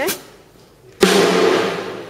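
A water-soaked drum kit struck once with sticks, about a second in, loud and sudden, then ringing out and slowly fading.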